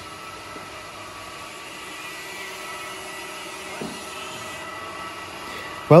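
Steady hum of workshop machinery with faint, even whining tones running through it.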